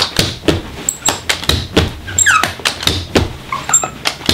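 A carpet knee kicker is bumped over and over, a run of knocks about twice a second as it stretches the carpet toward the wall. A short falling squeal comes about halfway through.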